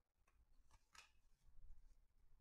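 Baseball trading cards flipped through by hand: a few faint, short flicks as cards slide off the front of the stack.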